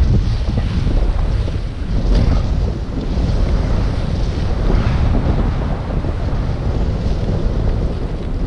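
Loud wind buffeting the camera microphone in the airflow of a tandem paraglider in flight, a steady rush whose level rises and falls unevenly.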